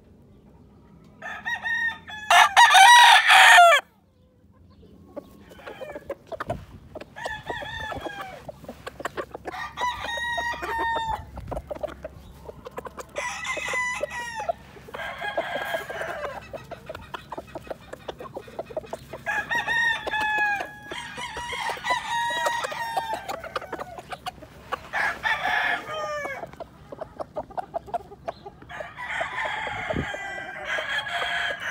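Several gamefowl roosters crowing one after another, about ten crows in all. The loudest, close by, comes about two seconds in; the rest are softer, from birds farther off.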